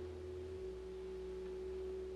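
A steady, held pitched tone of one note with a low hum beneath it.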